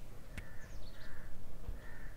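A bird calling in three short repeated calls, with a few faint higher chirps, after a single sharp click near the start.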